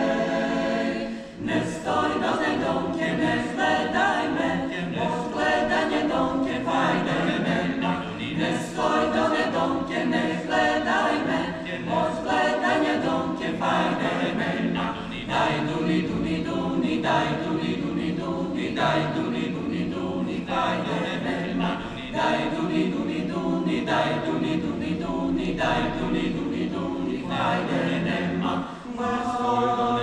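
Mixed choir singing a cappella in several parts, the sung phrases broken by a short pause about a second in and again near the end.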